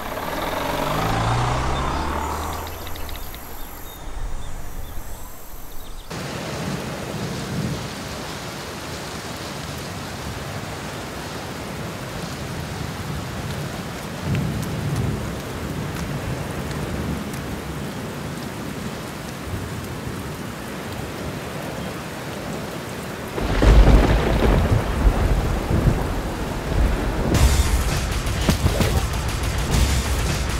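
A car engine sounds briefly at first, then a long steady rain and storm noise, with a loud low rumble of thunder near the end.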